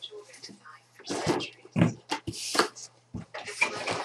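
Wrapping crinkling and rustling in irregular bursts as an item is unwrapped by hand.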